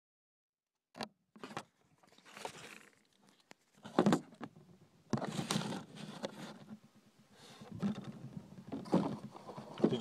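Irregular knocks and bursts of rustling noise, the loudest knock about four seconds in.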